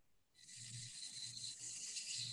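Faint steady high-pitched hiss with a thin steady tone in it, starting about half a second in after a moment of dead silence: the background noise of a microphone feed.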